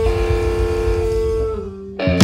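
A live blues-rock band of electric guitar, bass and drums winding up a song. A long held note rings over a fast low drum roll, then drops a little in pitch and fades about one and a half seconds in, ahead of a final crash.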